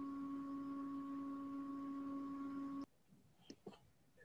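A steady, low-pitched tone held for about three seconds without wavering, then cut off suddenly, followed by two faint clicks.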